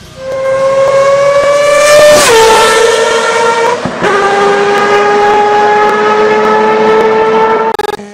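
Turismo Carretera race car engine running at high revs, its pitch climbing slowly, then dropping sharply a little over two seconds in. After a brief break near four seconds it holds a steady, loud high note.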